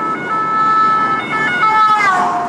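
Ambulance siren passing close by, heard from inside a car: steady high tones that step back and forth between pitches, with the pitch falling near the end as it goes past.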